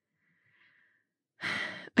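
Near silence, then about one and a half seconds in a woman takes a short audible breath, like a sigh, that fades as she starts to speak.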